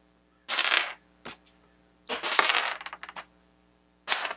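Small plastic Crazy Bones figures tossed onto a plastic tray, clattering and tumbling: a short clatter about half a second in, a single tick a moment later, and a longer rattle of quick knocks from about two seconds in as a figure bounces and rolls to rest.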